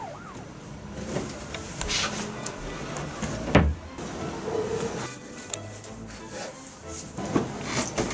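Scattered knocks and rustling over faint background music, the loudest knock a little past halfway.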